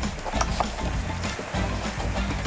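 Background music with steady low notes.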